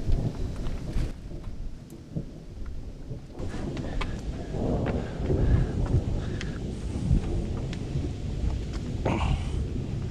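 Hands and shoes scuffing and knocking on rock during a boulder scramble, scattered sharp knocks over a continuous, uneven low rumble.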